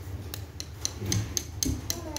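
Coloured pencils rubbing on paper in quick back-and-forth strokes, about four a second.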